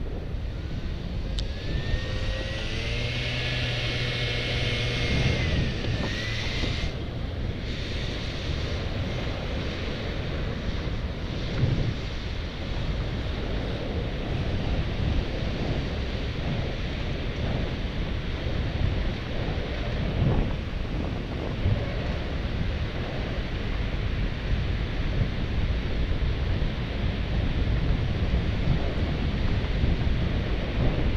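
Wind rumbling on the microphone of a camera riding on a moving bicycle, over steady street-traffic noise. For a few seconds near the start, a pitched hum with a high whine stands out above it.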